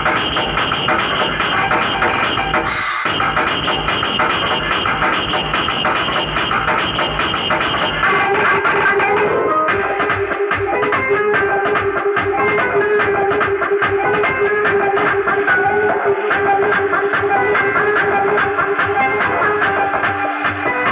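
Loud electronic dance music played through a DJ truck's large speaker stack. About eight seconds in the track changes: the heavy bass drops away and a held melody note runs over the beat.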